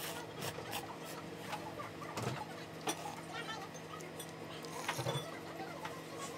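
Eating ramen: a ceramic soup spoon and chopsticks clicking and knocking against a ceramic bowl a few times, over a steady hum.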